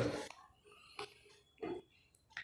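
A pause in a man's speech: his last word trails off, then near quiet broken by a couple of faint, short breath sounds, one about a second in and one shortly before the end.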